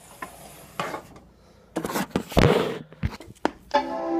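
Handling noise, rubbing and a loud rustle with a thump and clicks as the Macintosh Quadra 650's power button is pressed, then near the end the machine's power-on chime starts, a steady chord of several tones.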